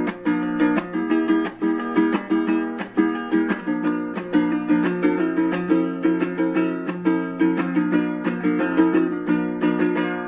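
Blackbird Clara concert ukulele, its body of Ekoa linen composite, strummed by hand in quick, even chords several times a second.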